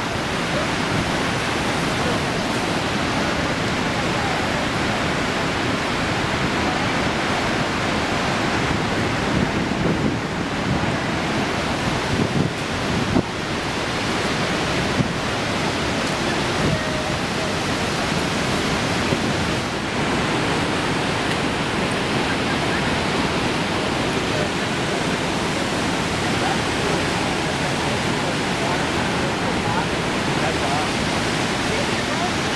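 Close-up roar of Niagara's Horseshoe Falls: a steady, loud rush of falling water that never lets up.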